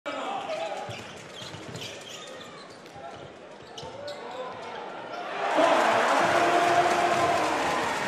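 Basketball game sound in an arena: sneakers squeaking and a ball bouncing on the court. About five and a half seconds in, the crowd noise swells suddenly and stays loud, cheering after the play at the rim.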